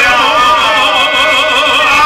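Live amplified izvorna folk music: a violin plays a wavering, vibrato-laden melody over held sung notes from male voices, with no pause.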